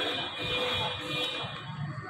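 A high, steady tone for about a second and a half, over the murmur of voices in a crowd.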